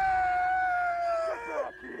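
A high voice holding one long, steady yell that drifts slightly down in pitch and breaks off shortly before the end.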